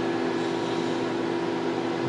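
Steady hum with a whirring hiss from the cooling fans of racked vintage HP test instruments running.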